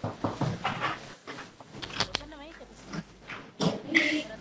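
Indistinct voices coming over a video-conference audio line, in short broken bursts, with a brief wavering, voice-like pitched sound about two and a half seconds in.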